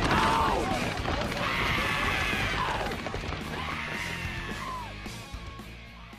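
Cartoon film soundtrack of a brawl: music with shouting and yelling voices and crash effects, fading out steadily toward the end.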